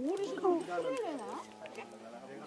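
Vizsla whining: a run of high whimpers that slide up and down in pitch, fading out near the end, as she strains after fish in the water.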